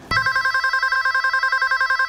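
Electronic telephone ring: a loud, fast warbling trill between two pitches that cuts off abruptly at the end.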